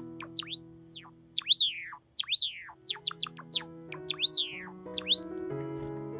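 Java sparrow calling: a quick series of short, sharp chirps that sweep downward, with three louder arching calls in between, over soft background piano music.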